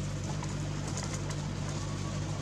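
A bird calling in the woods over a steady low hum.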